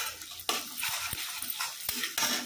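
Chopped drumstick pods and potato pieces being tipped into hot oil in a kadhai, sizzling with a run of clicks and rattles as the pieces land and spatter.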